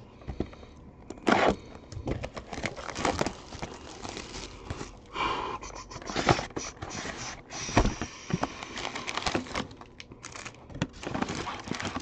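A cardboard trading-card hobby box handled and opened by hand: irregular taps, knocks and crinkling of packaging, with a short rustle about five seconds in.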